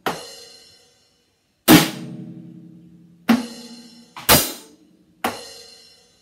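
Acoustic drum kit struck in slow, separate strokes, about five in all, as a beat is gone over part by part. Each drum-and-cymbal hit is left to ring out, and the loudest comes about two seconds in.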